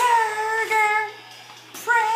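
A woman singing two short phrases with held notes, with a pause of about half a second between them.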